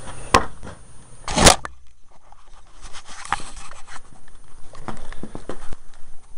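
Wires being hooked up to a battery by hand: a sharp click, then a louder short crackle about a second and a half in, followed by rustling and small knocks of handling.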